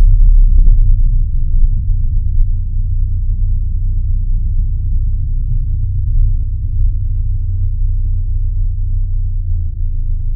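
A deep, steady rumble with nearly all its weight in the bass, and a few faint clicks in the first two seconds.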